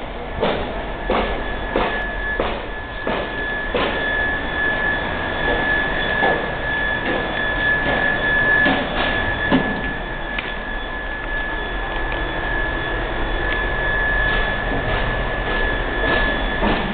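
A steady high-pitched whine over a low hum, with footsteps on a concrete floor about every two-thirds of a second for the first few seconds and again near the end.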